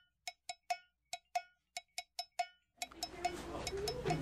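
A cowbell-like percussion instrument struck in a quick, syncopated rhythm, each hit short with a brief ring on the same note. About three-quarters of the way through the hits stop, and the hum and faint chatter of a classroom take over.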